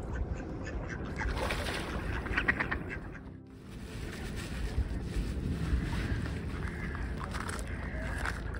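Mallard ducks quacking, with a quick run of quacks about two seconds in.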